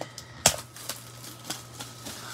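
Plastic shrink wrap being torn and pulled off a trading-card box: one sharp crack about half a second in, then a few lighter crinkling crackles.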